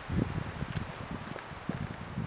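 Wind rumbling on an outdoor microphone, with light rustling and a few faint ticks from the camera being carried and handled.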